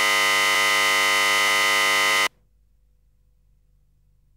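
A loud, harsh, steady electronic buzz, rich in overtones, cutting off abruptly a little over two seconds in: the sound of the phone line being cut off.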